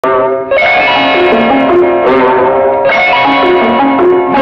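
Instrumental prelude of an old Tamil film song: a melody of held notes stepping up and down, over plucked strings and light percussion. Fresh phrases enter about half a second in and again near three seconds.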